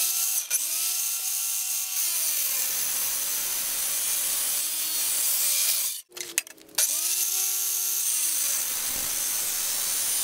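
Electric miter saw cutting galvanized steel fence pipe. The motor spins up and the blade grinds through the steel with a harsh, high, steady noise. The saw stops just after six seconds in, then spins up again for a second cut.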